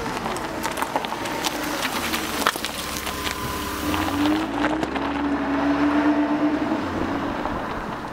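A vehicle engine running under the closing logo, with many scattered crackles and clicks. Its pitch rises slightly about four seconds in, then holds.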